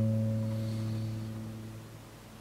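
The closing chord of a nylon-string classical guitar ringing on and slowly dying away.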